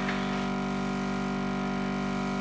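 Small cake-decorating airbrush compressor running with a steady, even hum.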